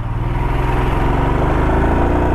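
Royal Enfield Himalayan motorcycle's single-cylinder engine pulling away under throttle, its pitch rising steadily as it gathers speed.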